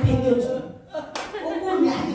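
Two sharp smacks of hands, about a second apart, among talking voices on a PA.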